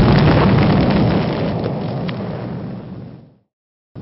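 Large explosion's roar and rumble dying away, with a couple of sharp crackles, fading out about three and a half seconds in.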